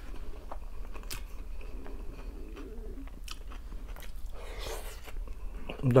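A person chewing a mouthful of crunchy cabbage salad close to the microphone, with scattered crisp crunches and clicks of the bite.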